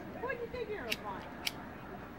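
A faint, high child's voice calling out, followed by two sharp clicks about half a second apart.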